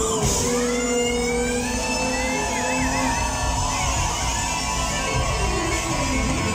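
Live band music played loud in a club. The drums stop at the start, leaving held notes and a high lead line that bends and wavers, with guitar prominent.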